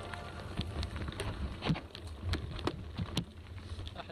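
Mountain bike riding over a rough dirt trail, picked up by a bike-mounted or body-mounted action camera: a low rumble of tyres and wind with scattered clicks and rattles from the bike over bumps.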